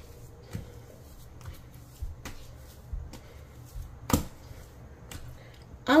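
Sticky yeast bread dough being kneaded by hand on a countertop, about six minutes into kneading and still tacky: soft, irregular slaps and sticky smacks as it is pressed and pulled from the surface, with one louder slap about four seconds in.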